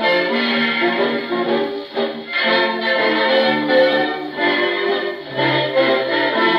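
A 1932 dance-band 78 rpm record playing on a Victrola console phonograph: the orchestra plays an instrumental passage, with the dull, treble-less sound of an old record.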